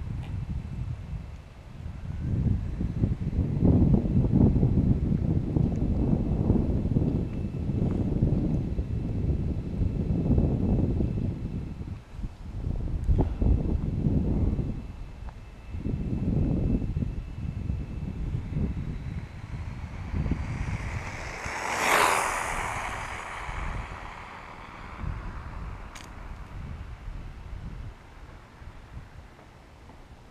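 Wind gusting on the microphone. About 22 s in, a Traxxas 2WD electric RC car on a 4S battery speeds past at full throttle: its high motor whine rises as it closes in, peaks sharply and fades away.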